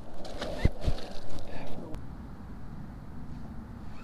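A small fish being let go over the side of a boat: a couple of short knocks and a brief splash in the first second, then low, steady wind and water noise.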